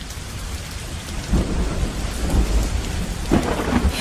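An even, rain-like hiss that fades in, with a deep thunder-like rumble building from about a second in.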